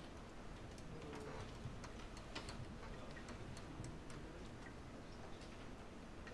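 Quiet room noise with faint, irregularly spaced clicks and taps scattered through it.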